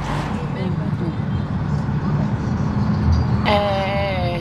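Steady low rumble of a car's engine and road noise heard inside the cabin. Near the end a voice comes in, holding a slowly falling sung note.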